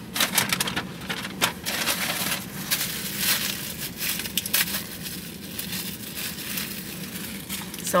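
Paper and packaging crinkling and crackling in quick irregular bursts, as a paper takeout bag is rummaged through and a small salt packet is handled.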